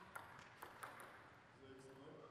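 Table tennis ball clicking off the rubber-faced bats and the table during a rally: a few short, sharp ticks in the first second. A faint voice is heard near the end.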